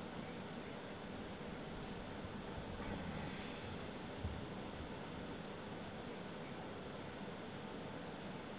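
Steady low background hiss of room tone, with no distinct sound events apart from a tiny click just after four seconds.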